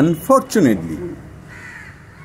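A man's voice speaking briefly in the first second, then a single bird call in the background about three-quarters of the way through.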